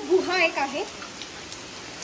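Monsoon rain falling steadily, an even hiss of drops.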